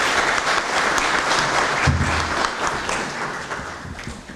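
Audience applauding, a dense patter of many hands that gradually dies away toward the end, with a short low thump about two seconds in.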